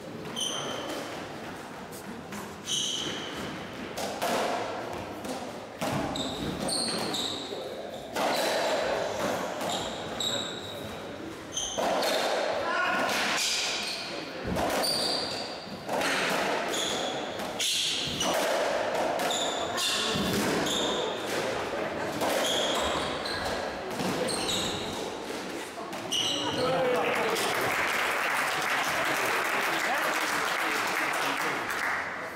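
A racketball rally on a squash court: the ball being struck by the rackets and thudding off the walls and floor, with sharp shoe squeaks on the wooden floor as the players move. Near the end the rally stops and applause sets in.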